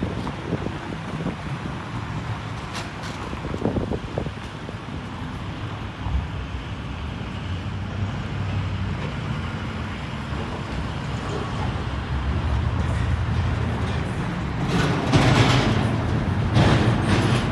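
Street traffic noise: a steady low rumble of road traffic, swelling louder in the last few seconds.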